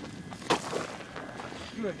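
A single sharp knock about half a second in, followed by a boy's voice saying "good" near the end.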